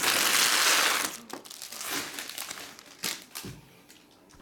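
Empty trading-card pack wrappers being crumpled by hand: a loud crinkling burst for about a second, then softer crackles and a single knock just after three seconds in.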